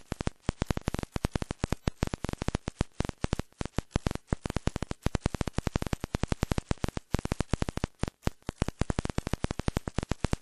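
Rapid, irregular crackling clicks, many a second, like static on an audio line.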